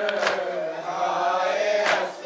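A group of men chanting a noha (Shia mourning lament) in unison, with two sharp chest-beating (matam) strikes landing together, about a second and a half apart.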